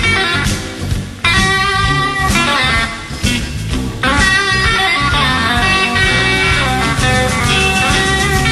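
Live electric blues band playing, led by an electric guitar with bent, wavering notes.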